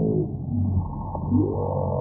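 Audio slowed to a fraction of its speed, turning the original sound into low, drawn-out tones that glide down near the start and back up about halfway through, over a steady low hum. It is dull and muffled, with nothing bright above the low range.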